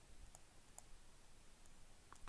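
Near silence: faint room tone with a few faint clicks from a stylus writing on a digital tablet.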